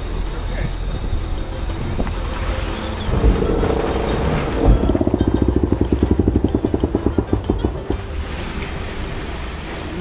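Wind and water rushing past a sailing catamaran under way, a steady low rumble. From about five to eight seconds in, a rapid flutter of about a dozen pulses a second joins it.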